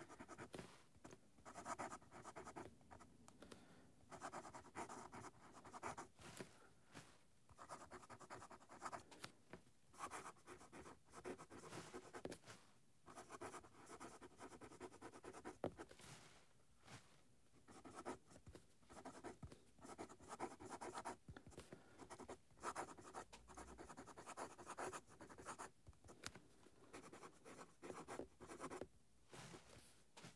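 Steel medium italic nib of a Conid Bulkfiller Regular fountain pen scratching faintly across paper as it writes, in clusters of short strokes with brief pauses between words. The nib is a sharp italic grind that gives noticeable feedback.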